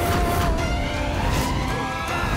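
Dramatic TV-serial background score with sustained tones and repeated percussive hits, overlaid with a whooshing sound effect.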